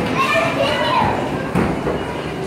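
Young children's voices calling and chattering in a large indoor hall.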